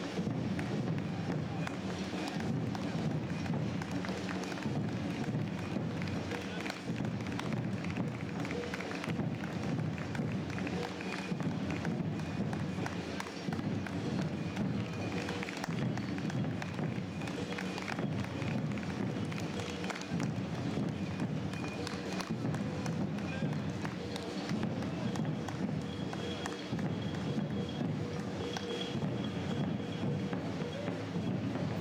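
Marathon runners' footsteps on an asphalt road, many short taps in a steady stream, over a background of voices and music.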